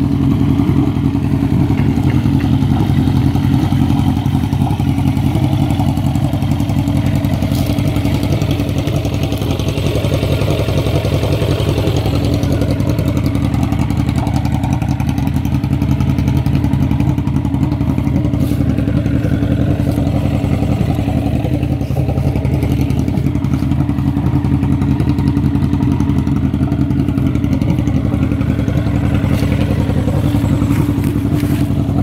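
Motorcycle engine idling steadily, a fast even firing pulse.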